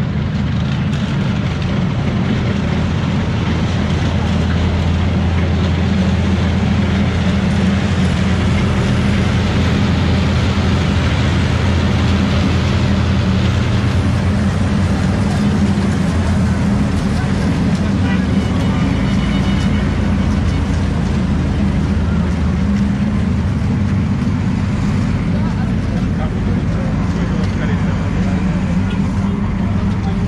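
Armoured military vehicles driving past on a road, their heavy diesel engines running loudly and steadily in a deep, low drone.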